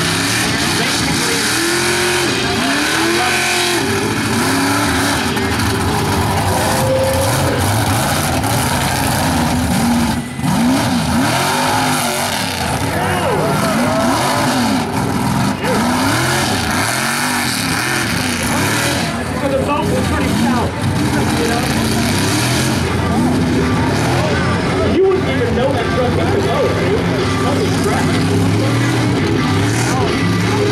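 Mega truck's engine revving hard over and over, its pitch climbing and falling again and again as the driver works the throttle through a freestyle run over obstacles.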